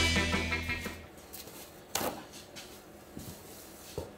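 Upbeat surf-rock guitar background music fading out over the first second, then low room tone with a single sharp knock about two seconds in and a couple of faint ticks near the end.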